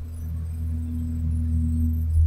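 A steady low hum made of a few held low tones, slowly growing louder through the pause. The same hum runs under the speech.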